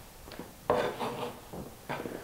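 Kitchen utensils being handled: a short clatter about two-thirds of a second in and a light knock near the end, as a chef's knife is picked up and set against a plastic cutting board.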